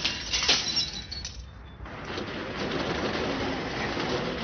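Glass smashing, with sharp crashes in the first second, then a steadier background noise.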